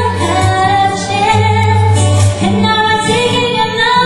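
A female vocalist singing with a live band, her voice holding and bending sung notes over a sustained bass line.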